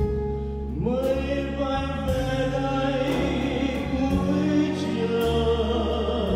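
Live chamber string orchestra with a drum kit playing a slow ballad: sustained strings swell in about a second in, over a soft beat about once a second.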